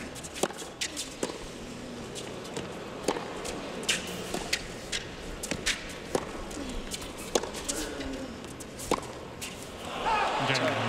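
Tennis rally on a hard court: a run of sharp racquet strikes and ball bounces, one every half second to a second.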